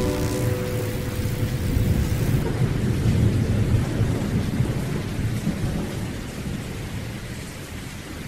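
A low rumbling noise with a hiss over it, like thunder and rain, slowly fading, with the last of a held musical chord dying away at the very start.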